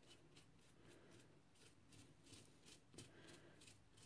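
Faint, evenly repeated scratchy strokes of a small paintbrush dabbing matte medium through a stencil onto a paper tag, about three or four strokes a second.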